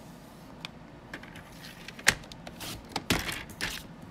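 Cardstock being worked on a paper trimmer: small clicks and rustles, one sharp click about two seconds in, then a few short scraping strokes as the paper is slid and scored.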